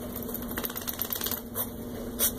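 Small dog rapidly snapping and chomping at bubble foam, a quick run of jaw clicks that stops about a second and a half in, followed by a single click.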